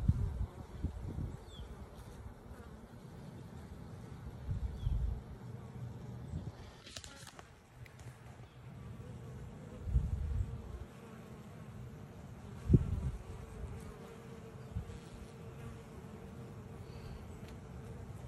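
Honeybees buzzing in a steady drone as they come and go at the entrance of a wooden hive. A few low bumps are heard, the loudest about thirteen seconds in.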